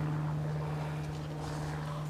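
A steady, low-pitched hum of a running motor, holding one even pitch throughout, with a faint hiss above it.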